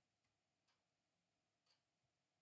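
Near silence, broken by a few very faint clicks.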